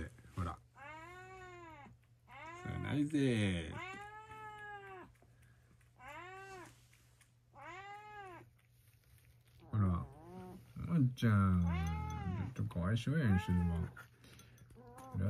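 Domestic cat meowing repeatedly, about nine calls, each rising and then falling in pitch. The last few, near the end, are louder and longer.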